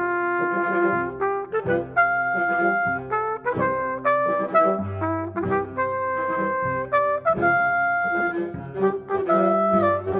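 Small mixed ensemble of strings, woodwinds and brass playing together, with the trumpet standing out in held notes. A low bass note comes in about five seconds in.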